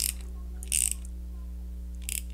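An 8 mm ratcheting wrench clicking as nuts are snugged tight onto bolts: one click at the start and a quick run of ratchet clicks about three quarters of a second in. A steady low hum runs underneath.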